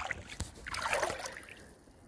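Shallow water sloshing around legs wading over a rocky bottom, with a single sharp knock about half a second in, then a swell of splashing that fades away.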